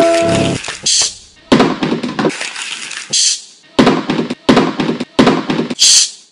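A beat built from recorded everyday school noises, such as a clicking pen, crumpling paper, knocks and a postbox lid snapping shut, played as a rhythmic pattern. A short pitched tone opens it, then comes a run of sharp, rustling hits, the last and loudest at the very end.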